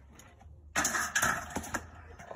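A unicycle crashing onto concrete: after a quiet start, a sudden noisy clatter and scrape about ¾ second in, with a few sharp knocks, lasting about a second.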